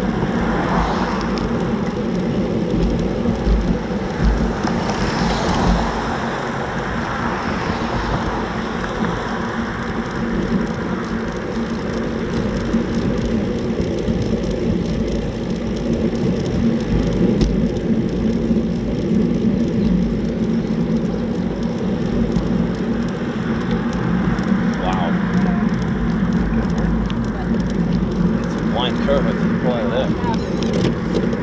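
Riding noise from a road bike moving at about 12 mph: steady wind rumble on the bike-mounted camera's microphone mixed with tyre and road hum.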